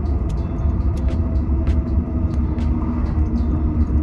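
Steady low road and engine rumble inside a moving car's cabin, with faint ticks at an even pace of about one every two-thirds of a second.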